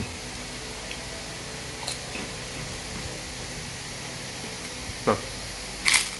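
Faint sounds of someone eating against a steady background hiss: a few small clicks, then one sharp click near the end.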